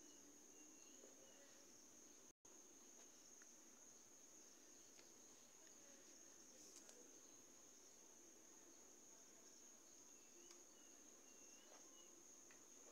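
Near silence: room tone with a faint, steady high-pitched whine.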